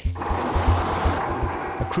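Loud rushing wind and sea noise from a lifeboat under way in choppy water, over background music with a low pulsing beat. The hiss thins out about a second in.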